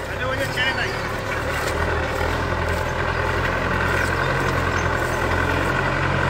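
Tractor engine running steadily under load as it pulls a tine cultivator through a field.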